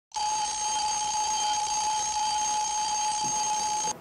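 Alarm clock ringing loudly and without a break, then cut off abruptly just before the end, as if switched off by the sleeper.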